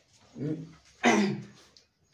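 Two short wordless vocal sounds from a man's voice, the second louder and falling in pitch.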